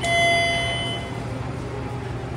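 Elevator arrival chime: a single ding that rings at once and dies away over about a second as the car reaches the floor, over a steady low hum.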